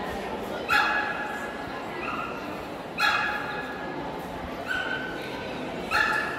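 A dog barking in short, high-pitched yaps, about five of them spaced a second or so apart, over the murmur of a crowd in a large hall.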